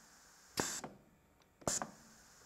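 Two short hisses of compressed air from the valves of a pneumatic trainer circuit, about a second apart, each lasting a fraction of a second.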